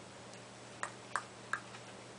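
Three light clicks from fingers handling a small cardboard price tag, over a faint steady hum.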